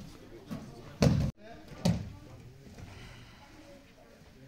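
Two thumps: a loud one about a second in that cuts off abruptly, and a second sharp one just under a second later that dies away.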